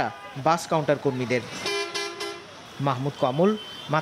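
A bus horn sounds once, a steady blast of just under a second, about a second and a half in, between bursts of people talking.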